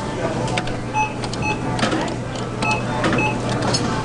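Short electronic beeps, a higher and a lower tone together, sound several times at irregular intervals. Under them are a steady low hum and a clatter of small clicks.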